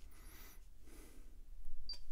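Faint room noise, then a single short high-pitched beep near the end: the Pioneer AVH-X2800BS head unit's touchscreen key tone as a radio preset button is pressed.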